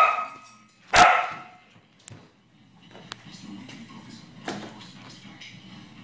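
A dog barking twice, about a second apart.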